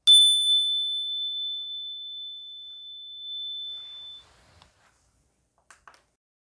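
A single-bar energy chime, a metal tone bar mounted on a wooden resonator block, struck once with a mallet and ringing one clear high tone that fades for about four seconds before it stops. A few faint clicks follow near the end.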